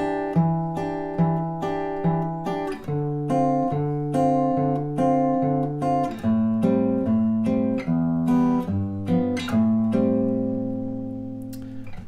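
Steel-string acoustic guitar fingerpicked in a steady pattern: a thumb-picked bass note alternating with a two-note double-stop from the index and middle fingers, moving through the song's chord shapes and ending on a chord left to ring and fade.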